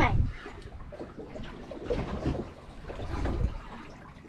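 Water lapping and washing against the hull of a small boat drifting at sea, a low, steady wash.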